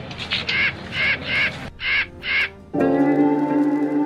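A crow cawing about six times in quick succession. Then, about three-quarters of the way through, background music with plucked guitar comes in.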